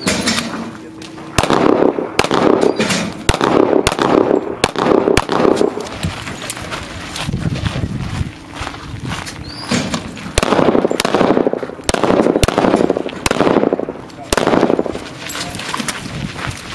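A string of pistol shots fired in two clusters, several in quick succession, during a timed handgun competition stage. Rough scuffing noise fills the gaps between the shots.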